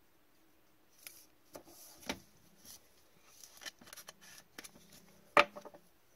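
A trading card being slid into a rigid clear plastic top loader by gloved hands: scattered light plastic scrapes and taps, with one sharper click a little before the end.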